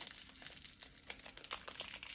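A little candy wrapper crinkling as it is twisted around a small perfume sample vial, a run of quick, light crackles.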